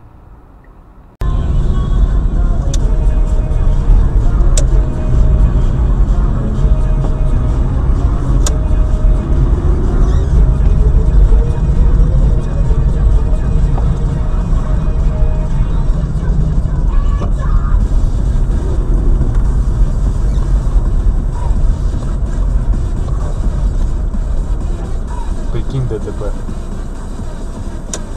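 Loud low rumble of a car being driven, heard from inside the cabin, with music playing; it starts abruptly about a second in and eases off a little near the end.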